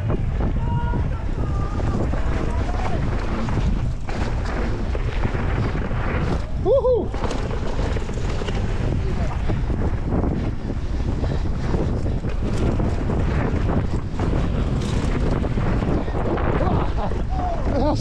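Wind buffeting the microphone, a steady low rumble throughout, with a short shout about seven seconds in and faint voices around it.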